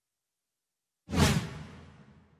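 A whoosh sound effect with a deep low end. It starts suddenly about a second in and fades over the next second.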